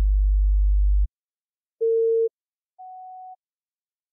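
Sparse electronic music of pure sine-wave tones: a loud, very low bass tone for about a second, then a short mid-pitched tone about two seconds in and a quieter, higher short tone after it, with silence between the notes.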